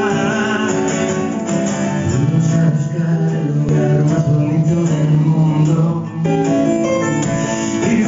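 A man singing live to his own strummed acoustic guitar, with long held notes and a brief dip in loudness about six seconds in.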